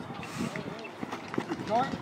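Flag football players' voices calling out across an open field, one call rising in pitch near the end, with faint scattered footfalls of players running on grass.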